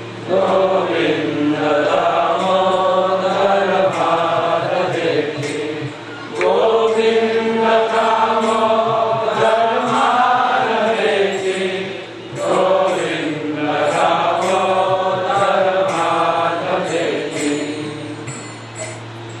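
A man's voice chanting a Hindu devotional prayer to a slow melody, with long held notes in three phrases of about six seconds each and short breaths between them. A steady low hum runs underneath.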